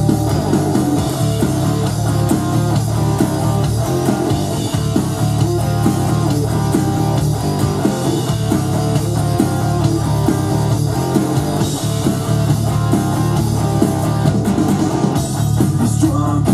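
Gibson SG electric guitar playing a rock riff, picked steadily, over a band backing track with drums and bass.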